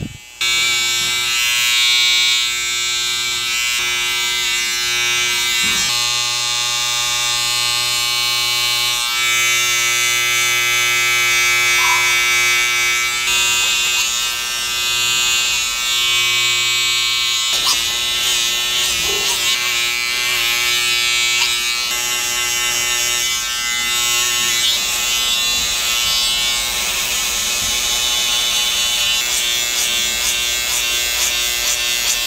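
Electric hair clippers running steadily with a constant motor buzz as they cut the hair at the nape of the neck over a comb, tapering the neckline.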